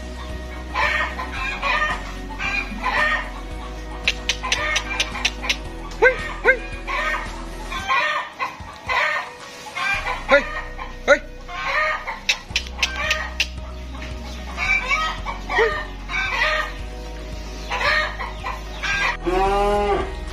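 Short bird calls repeating every second or so, over background music.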